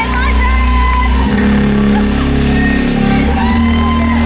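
Live rock band playing loudly through a festival sound system, with electric guitar, heard from the front of the crowd.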